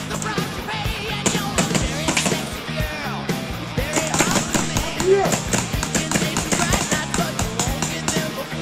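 Background music with rapid, repeated popping of paintball markers firing, and distant voices.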